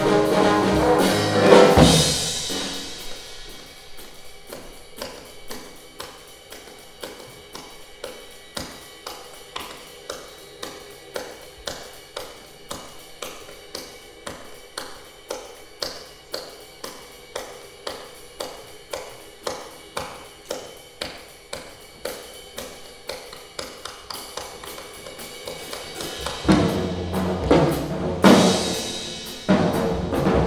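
A jazz band with trombone, piano and drums finishes a loud swing passage about two seconds in. Then comes a long solo of rhythmic hand claps, cupped-hand "beat clap" percussion in an even swing pulse, with soft piano underneath. The full band comes back in near the end.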